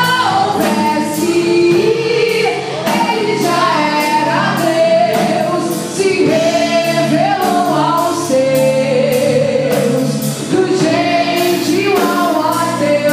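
Live gospel worship song: a woman sings the lead into a microphone over keyboard, electric bass and a drum kit, with the cymbals keeping a steady beat.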